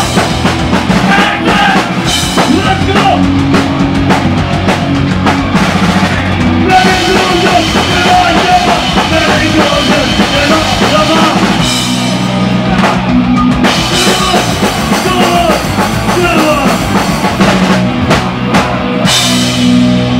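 Live hardcore punk band playing loud and without a break: distorted electric guitar, bass and drum kit, with a vocalist shouting into the microphone.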